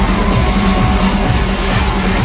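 Loud electronic trance music over a club sound system during a live DJ set, with a steady held low note underneath.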